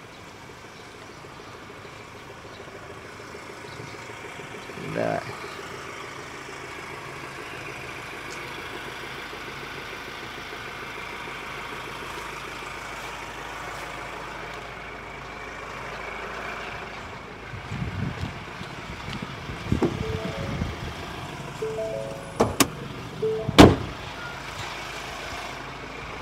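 Steady street traffic noise with a few short beeps and scattered knocks in the last third, ending with two sharp clicks about a second apart, the second the loudest sound.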